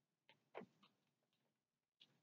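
Near silence: room tone with about four faint, brief clicks in the first second and a half.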